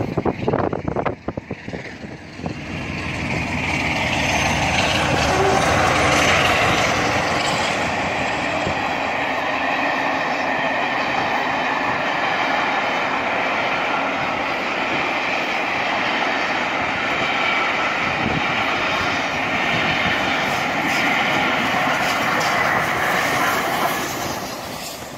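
A passenger train of coaches passing close by: a steady rolling noise of wheels on the rails that swells about three seconds in and holds. A few sharp knocks come in the first two seconds.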